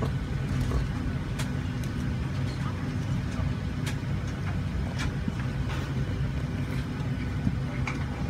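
Steady low drone inside an airliner cabin on the ground, with a few light clicks.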